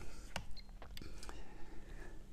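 A few faint, short clicks from a Megger multifunction tester and its test leads being handled during an insulation resistance test on a mineral-insulated (MICC) cable.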